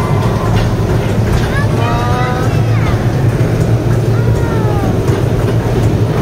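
Steady low rumble of an indoor dinosaur ride car travelling along its track.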